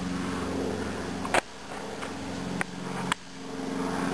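A steady motor hum made of several even low pitches, broken by three sharp clicks about one and a half, two and a half and three seconds in; after the first and last click the hum drops in level and then builds back up.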